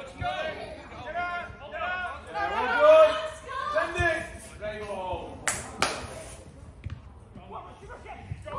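Men shouting and calling to each other across an outdoor football pitch, loudest about three seconds in, with a couple of dull thuds of the ball being kicked. A short loud hiss comes about two-thirds of the way through.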